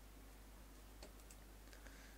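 Faint computer keyboard keystrokes: a few quiet clicks about a second in and again near the end.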